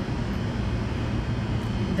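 Steady low mechanical drone, a fan-like hum with a rush of air from background equipment such as ventilation or air conditioning.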